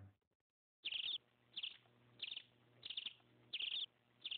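Faint, high chirping begins about a second in: five short chirps, each a quick flutter of notes, evenly spaced about two-thirds of a second apart, over a faint low hum.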